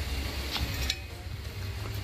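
Low rumble of handling noise on a phone's microphone, with two faint clicks about half a second and a second in.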